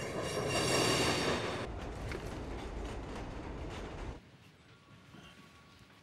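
Subway train rushing past in a tunnel, its steel wheels screeching shrilly on the rails for the first couple of seconds, then a steady rumble that cuts off suddenly about four seconds in.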